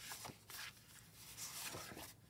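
Faint rustling and sliding of cards as one lined index card is drawn off a stack by hand, in a few soft brushes.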